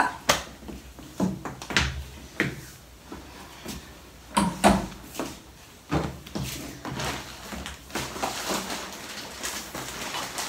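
Household handling sounds in a small tiled bathroom: scattered knocks and bumps, as of a door or cupboard and objects being moved. Over the last few seconds there is a soft rustle from a plastic-wrapped pack of bath towels being handled.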